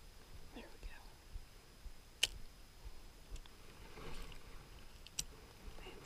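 Casting with a spinning rod and reel. Two sharp clicks about three seconds apart, the first the louder, fit the reel's bail being flipped open and snapped shut around the cast. A short soft swish falls between the clicks, over low handling rumble on the chest-mounted microphone.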